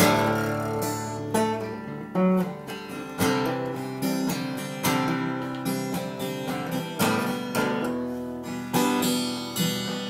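Ibanez copy of a Gibson Hummingbird acoustic guitar, tuned to double drop D, strummed in slow, uneven chords, each strum ringing out and decaying before the next.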